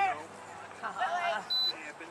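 A high raised voice calling out twice, then a short, steady high-pitched beep about one and a half seconds in.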